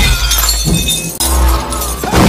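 A glass bottle smashing as it is broken over a man's head, a sudden crash right at the start, with loud, bass-heavy background music.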